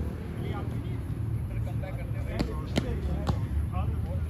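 Badminton rackets striking a shuttlecock: three sharp hits in quick succession in the second half, over a steady low rumble and faint distant voices.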